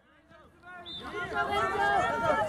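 Several distant voices calling and shouting over one another, fading in after about half a second of silence and building up.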